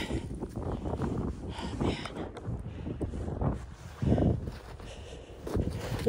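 Wind buffeting the microphone, with irregular crunches and knocks of packed ice and snow chunks being picked up and moved by hand, and a louder thump about four seconds in.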